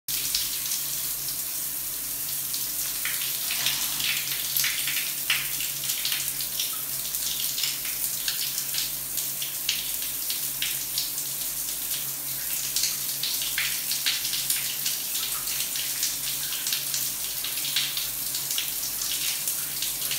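Shower running: a steady hiss of falling water with frequent short spattering splashes.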